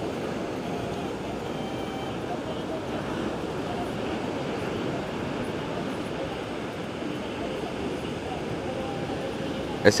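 Steady, even rush of ocean surf breaking on the beach.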